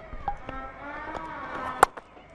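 Faint ground ambience at a cricket match, with distant voices, broken by one short sharp knock near the end.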